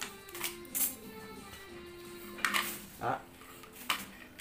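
Soft background music with long held notes. Over it come a few short scuffs and rustles from a rubber-jacketed extension cord being wound in loops around a forearm.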